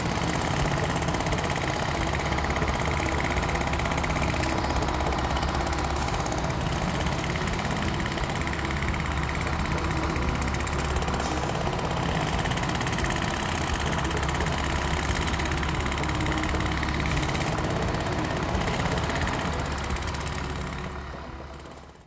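An engine running steadily with a deep low drone, fading out over the last couple of seconds.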